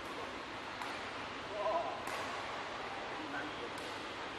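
Steady background hiss of a large indoor sports hall, with a brief voice-like sound about one and a half seconds in and a few faint sharp clicks.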